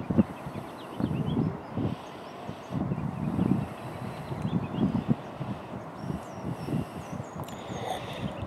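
Wind buffeting the microphone in irregular low rumbles, with faint, short, high bird chirps in the background.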